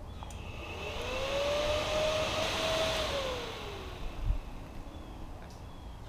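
Ducati 1198's electric radiator cooling fan, switched on with the engine off by a diagnostic scanner's active test: it spins up with a rising whine and air rush, runs briefly, then winds down. A low thump comes about four seconds in.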